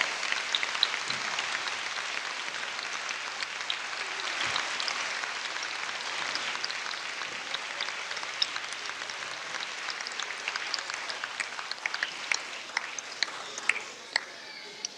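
Audience applauding steadily, thinning out to scattered claps near the end.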